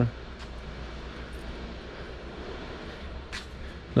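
Room tone of a large indoor hall: a steady low hum under a faint even hiss, with one faint tick about three seconds in.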